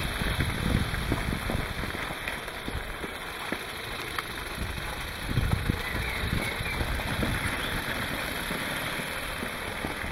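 LPEpower pneumatic Lego V8 engine running fast on compressed air, a steady noisy hiss, with the model's plastic wheels rolling over paving stones. Two louder low swells come near the start and about five seconds in.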